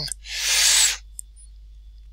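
A short, loud breathy exhale close to the microphone, under a second long, followed a moment later by a faint mouse click.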